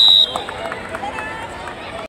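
A referee's whistle gives one long, steady blast that ends just after the start, marking the end of a kabaddi raid after a tackle. Players and onlookers then shout and talk until the sound cuts off suddenly at the end.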